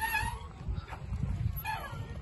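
Chain swing squeaking as it swings: a short, falling squeal at the start and another near the end, over a low rumble of wind on the microphone.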